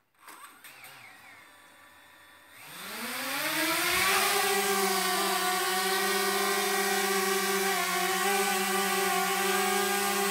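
DJI Mavic Mini drone's four motors and propellers spinning up for takeoff: a hum that rises in pitch for about a second and a half, a couple of seconds in, then settles into a loud, steady buzz as it hovers.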